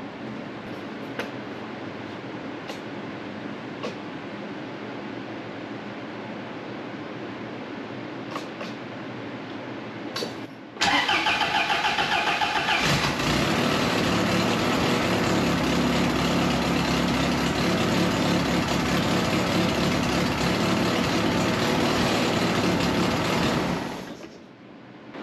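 Fiat 124 Spider's engine cranked by the starter about eleven seconds in, catching within about two seconds and then idling steadily until it stops near the end. Before that only a low steady background with a few faint clicks.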